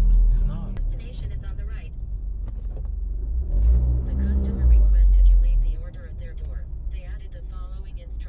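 Low rumble of a car driving, heard inside its cabin, swelling twice around the middle, with faint voices over it.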